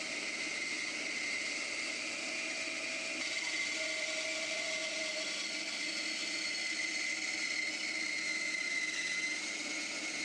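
Bandsaw running steadily, its blade cutting slowly through a thick laminated plywood blank to free the drawer of a bandsaw box. A steady hum with a thin, slightly wavering high tone over it.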